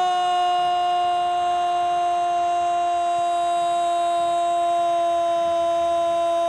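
Spanish-language TV football commentator's goal cry: one long, unbroken 'gooool' held on a single steady pitch that sags very slightly.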